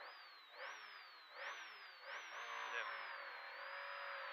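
Škoda 130 LR rally car's rear-mounted four-cylinder engine revving hard as the car launches from a standing start, heard from inside the cabin. Its pitch climbs and falls back about four times in quick succession, with each shift up through the gears, then settles into a steadier, slowly rising pull.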